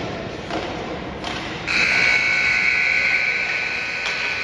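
Ice rink scoreboard buzzer starts about two seconds in and holds a loud, steady electronic tone, sounding as the game clock runs out to mark the end of the period. Before it, a couple of thuds come from play on the ice.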